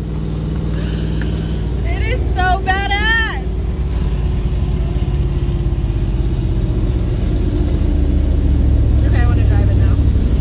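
An older truck's engine and road noise heard from inside the cab, a steady low drone that grows gradually louder as it picks up speed. About two seconds in, a woman's excited high-pitched voice rises over it briefly.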